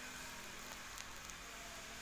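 Faint, steady ambient hiss with two faint ticks about a second in.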